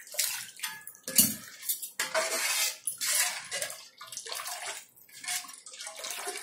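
Liquid poured in repeated splashes from a steel vessel into a large aluminium pot of thin curry, with light clinks of metal on metal.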